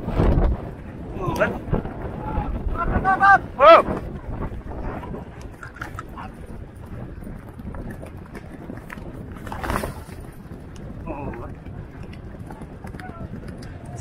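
A galloping steeplechase horse, heard from the rider's head camera: a heavy thump as it lands over a log fence, then running hoofbeats. Short vocal calls come at about one and a half and three to four seconds in.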